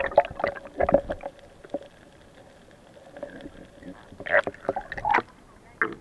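Irregular knocks and scraping on a small boat, loudest near the start and end, with a quieter stretch in the middle carrying a faint steady hum.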